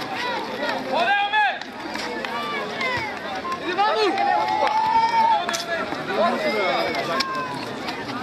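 Many voices of spectators and players shouting and calling at once during a five-a-side football match, with several long, loud calls standing out and a few sharp knocks among them.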